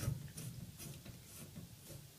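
The hex nut on a shower hose being screwed by hand onto the threaded fitting of a shower-arm holding bracket: faint ticks and scrapes of the threads, about five over two seconds.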